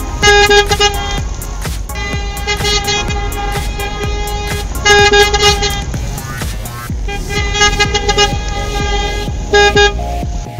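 Car horns honking in repeated toots over background music, with the loudest blasts just after the start, about five seconds in, and just before the end.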